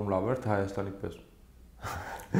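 A man speaking Armenian in conversation, then a short pause ended by a quick, sharp intake of breath.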